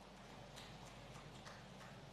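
Faint footsteps on a stage: a few light taps at roughly three a second, over a low steady hum.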